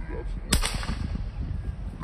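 A single sharp gunshot about half a second in, with a short ringing tail, fired at an iguana.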